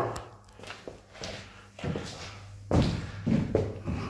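A few irregular footsteps on a flooded floor with ice under the water; the loudest step comes near the end.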